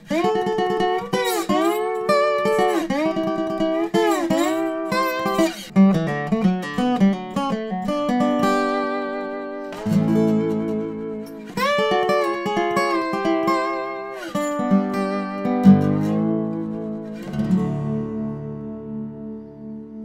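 A 1920s Weissenborn hollow-neck lap slide guitar played with finger picks and a metal bar in a Hawaiian style: notes swoop up and down as the bar slides along the strings, then a run of picked notes, ending on a chord left ringing and fading.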